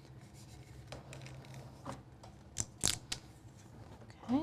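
Faint handling sounds of sublimation paper being wrapped around a tumbler: soft rubbing, with a few short paper crinkles in the second half.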